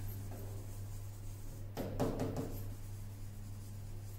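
Faint scratching strokes of a pen writing on a board, clustered about two seconds in, over a steady low hum.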